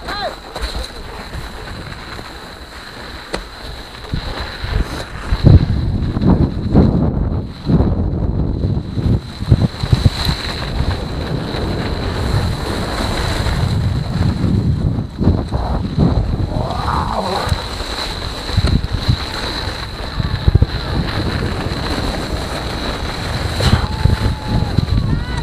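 Wind buffeting a helmet-mounted action camera as a downhill mountain bike runs over packed snow, with jolts and rattles from the bike over bumps. It grows louder about five seconds in as the bike picks up speed, and a thin steady high whine sits underneath.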